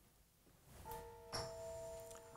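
Faint silence, then about a second in a soft, steady chime-like chord of a few pure tones comes in and holds, with a light click partway through.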